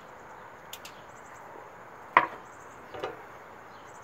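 A whisky glass set down on a tiled tabletop: one sharp knock about two seconds in, then a softer knock about a second later.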